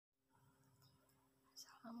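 Near silence: faint room tone, then a woman starts speaking near the end.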